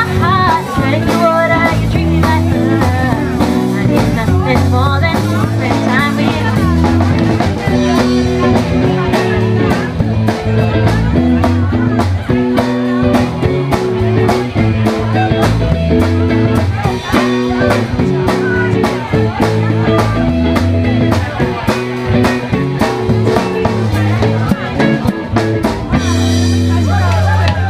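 Live rock band playing: electric guitar, bass guitar and drum kit, with a steady drum beat.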